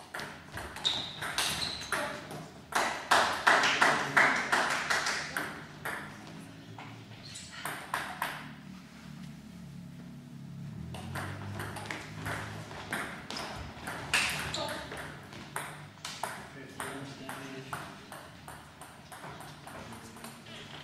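Table tennis ball clicking off rackets and the table in quick rallies, the fastest run of hits about three to five seconds in, with voices between points.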